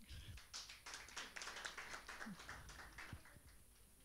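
Faint, scattered hand-clapping from a small seated audience, irregular claps that die away after about three seconds.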